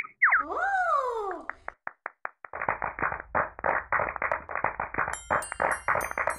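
Cartoon sound effects: a springy boing whose pitch swoops up and then slides down over about a second and a half, then a few clicks and a fast, dense clatter. High twinkling chimes come in about five seconds in.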